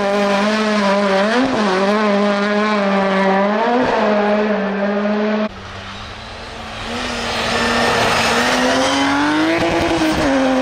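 Peugeot 206 rally car's engine held at high revs on a snowy stage, with two brief rises in pitch about one and a half and four seconds in. It cuts off suddenly at about five and a half seconds. Then a BMW E36 rally car's engine is heard approaching, growing louder and rising in pitch toward the end.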